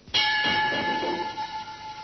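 A steady ringing tone starts suddenly and holds for about two seconds over a rushing noise, then fades.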